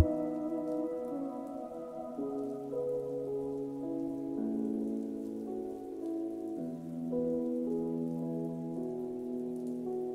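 Steady rain sound effect over a muffled, low-passed pop song in a soft passage of sustained chords that shift every couple of seconds, with no bass or beat.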